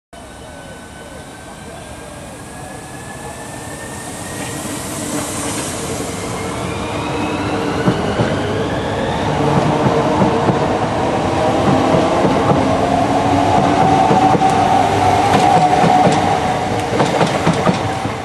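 Southeastern Class 395 'Javelin' electric multiple unit running into the platform, its motors giving thin whining tones that glide upward while the wheels rumble on the rails. It grows steadily louder as it draws alongside, with a run of sharp clicks from the wheels near the end.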